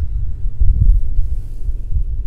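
Wind buffeting the microphone: a loud, uneven low rumble that surges and fades.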